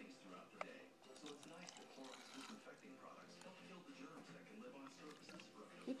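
Faint pouring of vinegar from a plastic bottle into a glass jar, with a light click about half a second in, under faint background voices.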